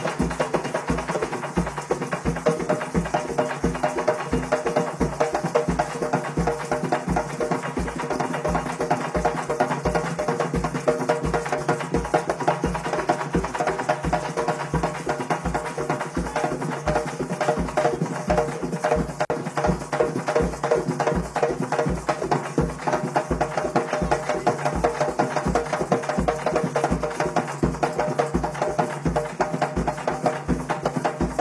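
Afro-Venezuelan tambores de San Juan, a group of long drums, played live in a fast, steady rhythm that runs without a break.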